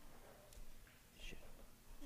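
Near silence: room tone with a couple of faint, brief breathy sounds about half a second and a second and a quarter in.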